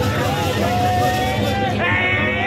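Dense crowd noise: many voices shouting and calling at once, overlapping into a loud, steady din.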